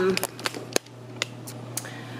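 Several sharp clicks and taps, one every half second or so, the strongest a little under a second in, over a steady low hum.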